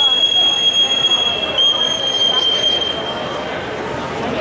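A long, high, steady electronic tone that cuts off about three-quarters of the way through, with a slightly lower tone overlapping it for the first second and a half. It is typical of a wrestling scoreboard timer signalling a stoppage or the end of a period, heard over gym crowd chatter.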